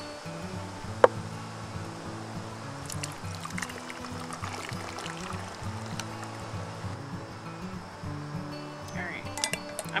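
Background music of sustained low notes, with tea being poured from a glass measuring cup through a fine-mesh strainer into a plastic pitcher. A single sharp click, the loudest sound, comes about a second in.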